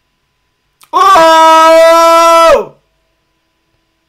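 A shofar blast: one loud, steady held note of about a second and a half, with a short upward bend as it starts and a falling drop-off as it ends.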